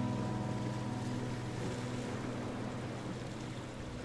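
The tail of soft guitar background music fades out about a second in, leaving a steady hiss with a faint low hum.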